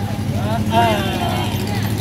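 Men's voices calling out over a steady low drone of street traffic.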